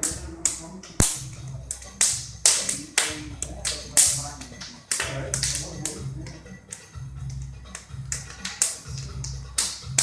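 Quick, irregular sharp slaps of hands and forearms striking and trapping each other in a pak sao drill, about three or four a second. A low background music bass pulses underneath from about halfway.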